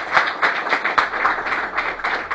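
A small crowd applauding: many quick overlapping hand claps.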